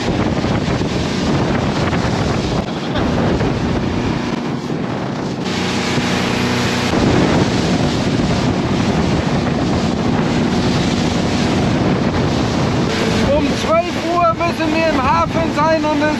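Small motorboat running at speed: a steady engine drone under heavy wind buffeting on the microphone and rushing water. A voice comes in near the end.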